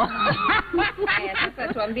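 People chuckling and laughing, mixed with talking voices.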